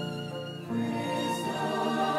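Violin playing held notes over accompaniment; the music grows louder and fuller about two-thirds of a second in.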